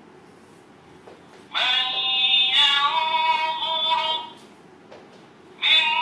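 A Quran reading pen's small speaker plays a recorded recitation of a verse in tarteel style: a chanted voice with long held notes. Each passage follows a soft click as the pen touches the page. The first passage runs from about a second and a half in to about four seconds, and the second starts near the end.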